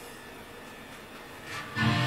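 Electric guitar left faintly ringing and quiet, then a loud chord struck near the end and left to ring.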